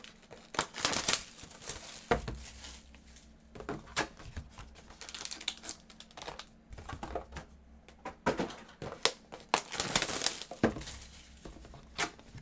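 Foil-wrapped trading-card packs and cardboard hobby boxes being handled: irregular crinkling of pack wrappers mixed with taps and scrapes of cardboard. Denser crinkling comes about a second in, around five seconds and again near ten seconds.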